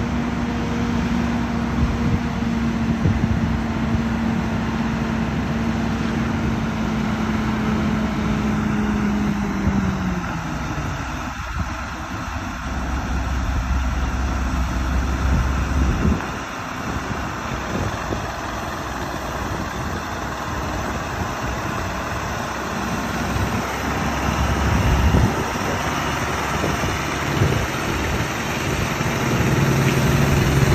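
Heavy truck's diesel engine running under load as it tows a houseboat on a trailer up a boat ramp. A steady engine note falls in pitch about ten seconds in, then a low rumble carries on.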